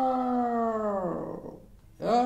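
Benchmark game soundtrack from an iPhone 7 Plus speaker: a long, held, voice-like note that slides down in pitch and fades out about a second in, as the phone's volume is turned down.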